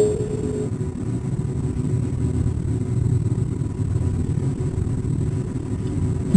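Steady low rumble of background noise with no clear rhythm or change, with a brief steady tone in the first half-second.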